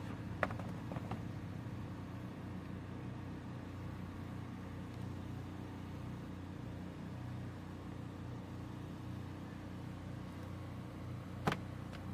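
An engine running steadily with a low, even drone, and a few sharp clicks over it, the loudest near the end.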